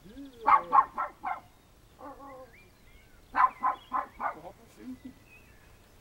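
A dog barking in two quick runs of about four barks each, the first starting about half a second in and the second about three and a half seconds in.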